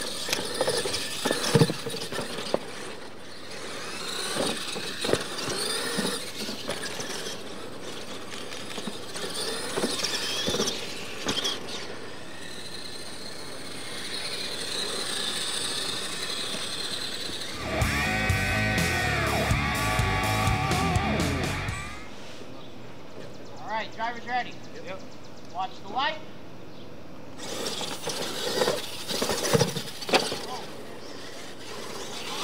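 Radio-controlled monster trucks racing over a dirt track, with sharp knocks from jumps and landings in the first seconds. A short music sting with heavy bass plays for about four seconds just past the middle, followed by a few high squealing glides.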